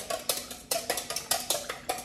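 Wire whisk beating egg and milk in a stainless steel bowl, its wires clicking against the metal side in a quick, steady rhythm of about six strokes a second.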